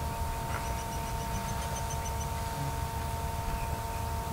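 A songbird in the background repeating a quick, even series of short high notes, about six or seven a second, that stops about two seconds in. Under it runs a steady low rumble and a constant thin electrical whine.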